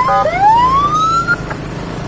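Electronic siren from a handheld megaphone: a couple of quick yelps, then one tone rising in pitch for about a second before cutting off suddenly. Under it, a motorcycle engine runs steadily.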